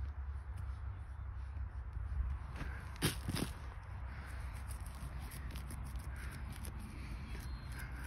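Hands digging and crumbling loose potting soil around walnut seedling roots, a steady rustle with small ticks of falling soil and a couple of louder crackles about three seconds in, over a steady low rumble.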